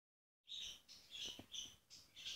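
Birds chirping faintly: a quick run of short, high chirps starting about half a second in.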